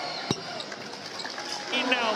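Arena crowd noise with a single sharp knock of the basketball about a third of a second in. Sneakers squeak on the hardwood near the end.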